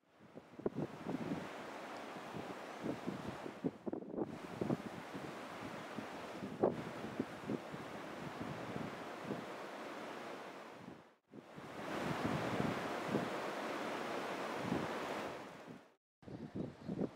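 Wind blowing across the camera microphone, a steady rushing noise with frequent short gusts and buffets. It drops out briefly at cuts about 4 s and 11 s in.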